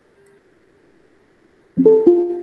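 Google Meet notification chime near the end: two quick plucked-sounding notes, the second ringing on and fading, the sound Meet plays as a waiting participant is admitted to the call. Before it there is only faint low hiss.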